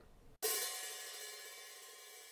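A single stick stroke on an open hi-hat about half a second in, the loose cymbals ringing out in a bright wash that slowly fades.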